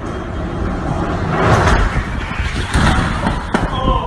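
A BMX bike clattering and bumping down a metal escalator, ending in a crash as the rider falls.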